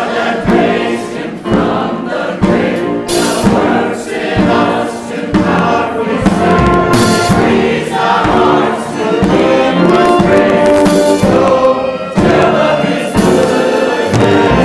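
Church choir singing a hymn in full harmony, accompanied by an orchestra of strings and brass, with trumpets, trombones and tuba.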